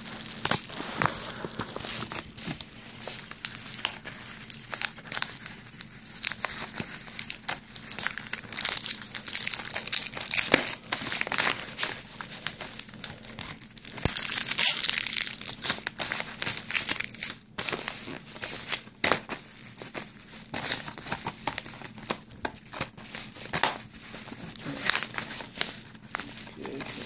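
Plastic wrapping on a DVD case crinkling and tearing as it is picked at and peeled off, in irregular crackles with a denser, louder stretch about halfway through.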